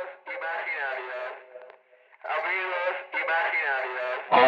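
A man's voice through a handheld megaphone, thin and tinny, in four short vocal phrases grouped in two pairs.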